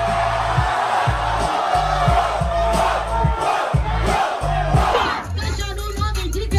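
Rap battle crowd yelling and cheering over a hip-hop beat with heavy bass; the crowd noise dies down about five seconds in while the beat continues.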